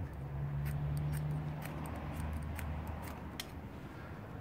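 Ferrocerium fire steel scraped with its striker in about ten quick, uneven strokes, throwing sparks onto Vaseline-soaked cotton wool to light a wood-gas camping stove. A low steady hum sits underneath, fading after about two seconds.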